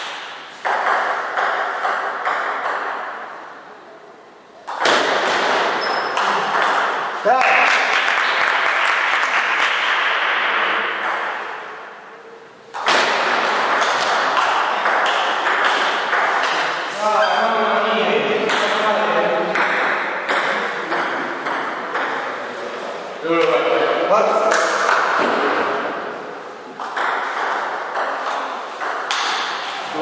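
Table tennis rallies: the ball clicking off the rubber paddles and bouncing on a Cornilleau table in a quick back-and-forth, with short lulls between points about 4 and 12 seconds in.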